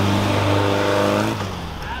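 Air-cooled flat-four engine of a Volkswagen Beetle race car running at steady revs, then fading away about a second and a half in.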